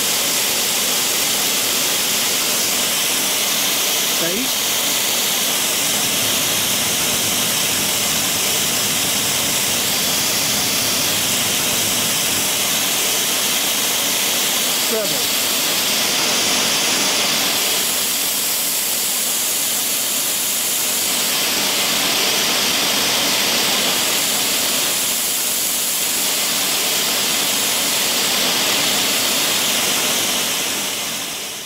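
White noise played through an Edifier D12 Bluetooth stereo speaker with its front grille removed: a steady hiss. Its tone shifts several times, brighter or duller, as the bass and treble controls are turned.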